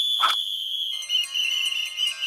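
Cartoon soundtrack sound effect: a high held tone with a short burst near the start, joined about a second in by a shimmering, sustained chord of many tones.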